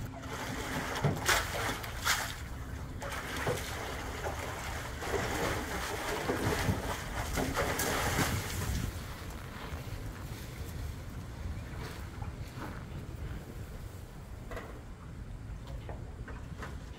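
Water splashing and sloshing in a metal stock tank as a tiger thrashes about in it, with sharp splashes in the first few seconds and a big cascade as it leaps out about eight seconds in. After that the water settles and wind rumbles on the microphone.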